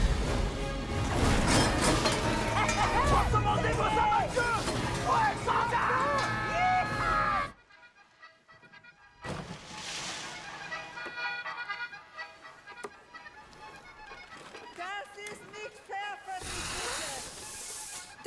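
Film soundtrack of an action scene: loud music mixed with sound effects and voices for about seven and a half seconds, then a sudden cut to near silence. After that comes a quieter stretch of music and ambience, with a short swell near the end.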